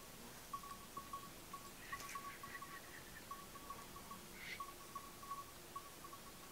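Faint tinkling of livestock bells on a grazing flock: many short strokes at one high pitch in irregular runs, with a brighter ring about four and a half seconds in.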